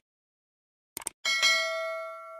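A quick double click, then a bright bell ding with several ringing tones that slowly fade: a subscribe-button and notification-bell sound effect.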